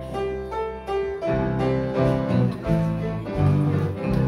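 Live instrumental church music: a grand piano with acoustic guitars, playing a hymn introduction of sustained chords and melody notes.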